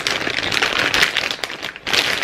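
Plastic packaging of a pack of synthetic braiding hair crinkling and crackling as it is handled and opened.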